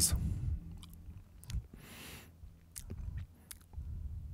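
Faint handling noise from an electric guitar: a few small clicks of hands on the strings, over a steady low hum, with one short soft hiss about two seconds in.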